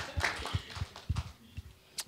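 Guests' applause dying away to a few scattered claps, fading to near quiet by the end.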